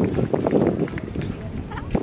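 Indistinct voices talking, with a few light clicking taps among them.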